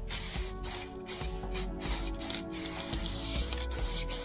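Aerosol spray paint can hissing in a series of short bursts, with one longer spray about three seconds in, as blue fill paint goes onto a brick wall. Background music plays underneath.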